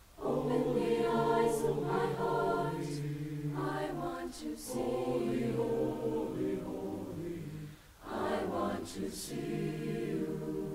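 Mixed high school choir singing sustained chords with words, with short breaks for breath just at the start and again about eight seconds in.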